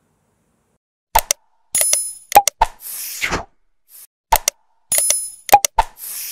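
Subscribe-button outro sound effect starting about a second in: two clicks, a short bright bell ding, two more clicks and a whoosh. The whole sequence plays twice.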